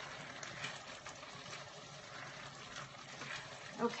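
Pot of quinoa dressing simmering on the stove, a faint steady sound of liquid cooking off.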